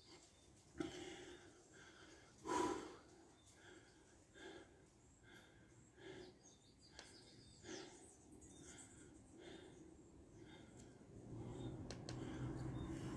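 A man's breathing during a bodyweight exercise: short, sharp exhalations about every second and a half, faint overall, the loudest about two and a half seconds in.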